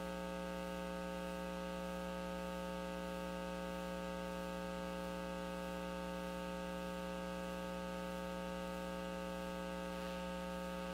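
Steady electrical mains hum: a constant low buzz with a stack of higher overtones, unchanging throughout.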